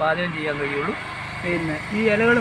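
Only speech: a man talking, with no other distinct sound.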